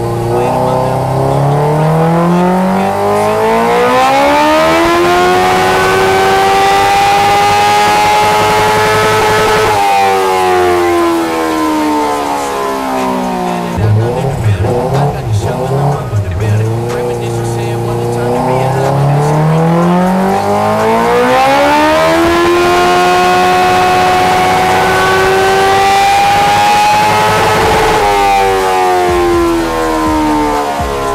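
Honda CB650R's inline-four engine on a chassis dyno, in two full-throttle pulls: each time the engine note climbs steadily for about nine seconds, then drops sharply as the throttle is shut, first about ten seconds in and again near the end. These are baseline power runs on the stock ECU, before a flash tune.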